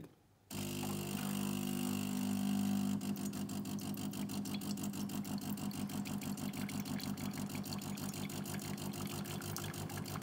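De'Longhi Magnifica S Smart bean-to-cup coffee machine running its start-up rinse: its pump sends hot water through the spouts to warm the pipes. A steady mechanical hum starts about half a second in, and from about three seconds in it turns into a rapid, even pulsing.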